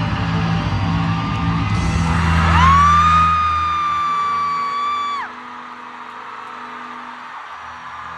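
Arena crowd cheering over loud music with a heavy bass. About two and a half seconds in, a person close by lets out one long, high-pitched scream held steady for nearly three seconds. It cuts off suddenly, and the music and crowd drop to a lower level.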